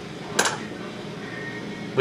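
Student-built automated stator winding machine running with a steady hum, and one sharp click about half a second in.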